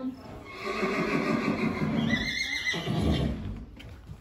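A horse whinnying: one long call of about two seconds that climbs higher near its end, followed by a short lower sound.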